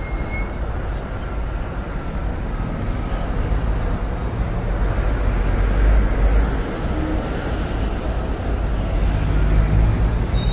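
Steady city street traffic noise: a dense rumble of vehicle engines.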